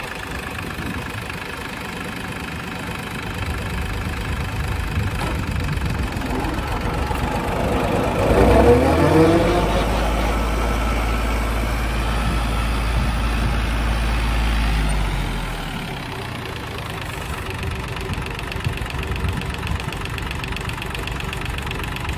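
John Deere 750 compact tractor's three-cylinder diesel idling, then revving up about eight seconds in and running faster and louder for about seven seconds before dropping back to idle.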